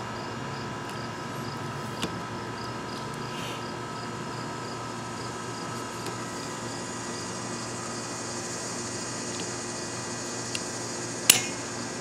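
A few small plastic clicks from a windshield wiper blade's adapter being fitted on its metal arm, the loudest a sharp snap near the end. Under it, a steady outdoor hum and insects chirping in a quick, even pulse.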